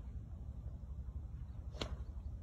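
A driver's clubhead strikes a golf ball off the tee with one sharp crack near the end, over a steady low wind rumble on the microphone.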